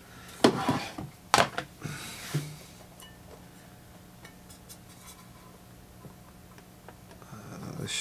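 A few sharp knocks and clinks from handling the turntable's parts as the rubber platter mat is set aside and the bare platter is touched, mostly in the first couple of seconds. After that comes a faint steady low hum.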